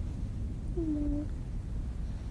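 A short, soft whimper from a grieving character: one held note about half a second long, near the middle, over a low steady hum.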